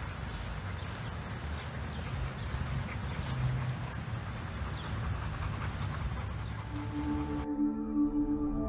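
Steady outdoor background noise with a low rumble and a few faint clicks. Near the end, synthesized outro music comes in with held tones, and the outdoor sound cuts off abruptly.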